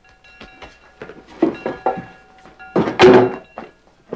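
A school bell ringing in repeated strokes, its clear steady tones sounding for the first two and a half seconds or so. About three seconds in comes a loud thump with some echo, then scattered knocks.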